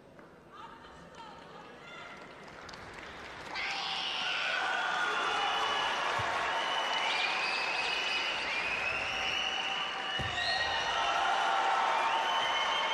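Home crowd in an arena cheering, shouting and applauding in support of a kata performance, building slowly and then swelling sharply about three and a half seconds in and holding there. A few low thumps sound under it.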